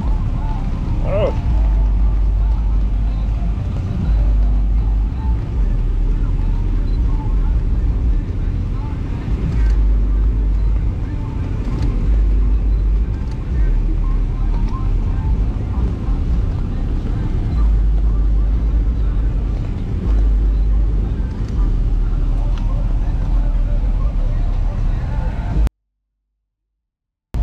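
Wind buffeting the microphone in irregular gusts, a deep rumble that surges and drops every second or two, over a steady outdoor hiss with faint voices. The sound cuts out suddenly just before the end.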